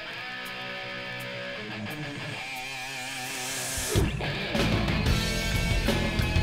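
Intro of a hard rock song: guitar playing alone, with a wavering, bent note near the middle, then a rising swell and the full band with drums and bass coming in, louder, about four seconds in.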